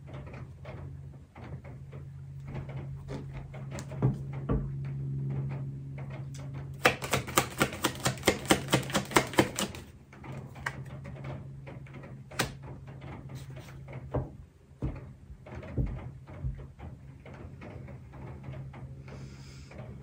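Tarot deck being shuffled by hand: cards slapping together in a quick run of clicks, about six a second, lasting about three seconds in the middle, with scattered lighter taps of card handling before and after.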